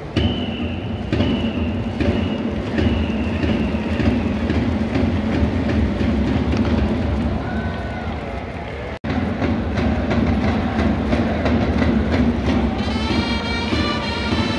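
Baseball stadium outfield cheering section: a crowd's steady din with the cheering squad's drumming, and a high held tone repeated several times in the first few seconds. The sound cuts out for an instant about nine seconds in, and near the end the cheering squad's trumpets strike up a tune.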